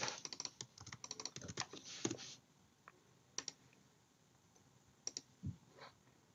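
Quiet computer keyboard typing: a quick run of keystrokes for about two seconds, then a few isolated clicks with gaps of near silence between them.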